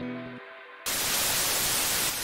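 Soft plucked-string background music dies away in the first half second. Just under a second in, a loud, steady hiss of static cuts in abruptly, like a white-noise transition effect.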